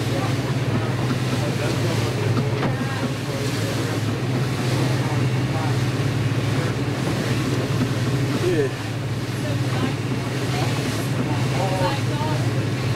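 Boat engine running steadily under way, a constant low drone heard from inside the wheelhouse, with the rush of wind and water along the hull.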